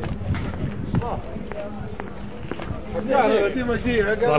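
Footsteps of a person walking on a paved street, with faint voices of a market crowd behind. About three seconds in, a man's voice starts up loud and close.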